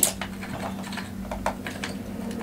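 About half a dozen light, sharp clicks and taps of small hard objects being handled on a tabletop, loudest right at the start and again about one and a half seconds in.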